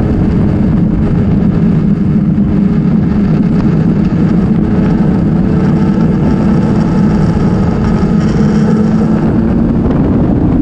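BMW K1200R inline four-cylinder engine running steadily as the motorcycle rides along at road speed, its drone mixed with wind rush on the microphone.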